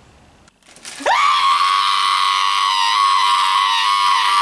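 A man screaming: one long, loud scream held at a steady pitch, starting about a second in.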